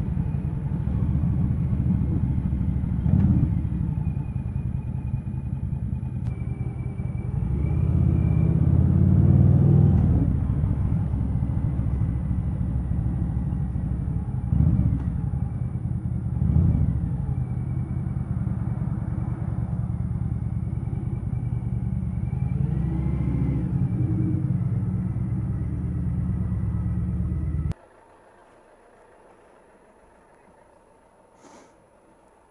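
Motorcycle engine running under way with wind and road noise, picked up by a microphone inside the rider's helmet; the engine and wind swell around eight to ten seconds in as the bike speeds up. Near the end the sound cuts off suddenly to a faint background.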